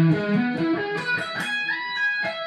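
Electric guitar playing a single-note lick in E that climbs up the neck, shifting into a higher E major position, with a slide near the end.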